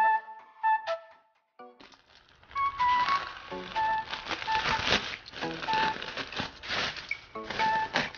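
Background music with a flute-like melody of short held notes. From about two and a half seconds in, plastic bag wrapping crinkles and tears as it is cut and pulled open, under the music.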